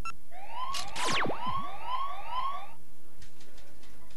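Cartoon sound effect: a siren-like whoop rising over and over, about two and a half times a second for just over two seconds, with a long falling whistle sweeping down through it about a second in.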